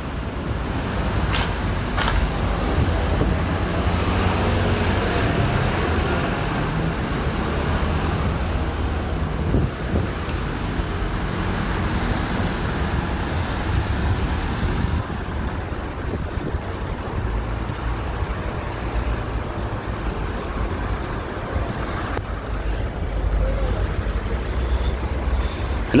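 Road traffic on a city street: cars driving past in a steady rumble of engines and tyres, somewhat louder in the first half.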